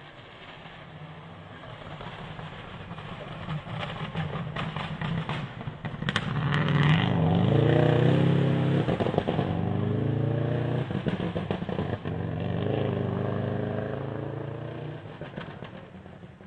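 Rally car engine approaching and passing through a gravel hairpin, revving hard, its pitch rising and falling with throttle and gear changes. A run of sharp cracks comes as it nears. It is loudest about halfway through, then slowly fades as it pulls away.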